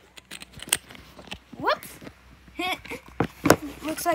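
A camera tipping over and being handled: a few scattered knocks and bumps, the loudest about three and a half seconds in, with short vocal exclamations in between.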